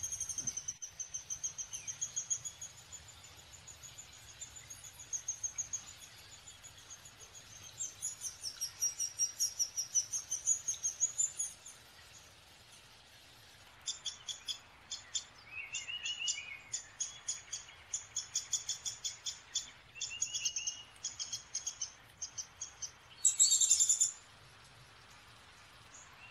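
Recorded downy woodpecker calls: a rapid, high-pitched run of begging calls from a nestling that goes on for about twelve seconds and swells near the middle. After a short pause come quicker runs of sharp high notes with a brief lower, falling note among them. The recording is of poor quality.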